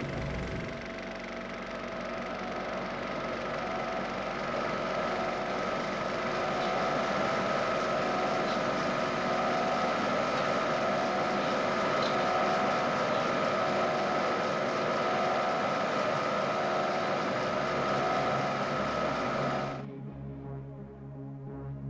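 Philips DP70 film projector running: a steady mechanical whirr with a constant high whine, cutting off suddenly near the end.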